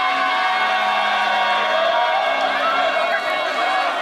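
Festival crowd around a hauled float: many voices calling and chanting at once, with long drawn-out sung notes over the hubbub.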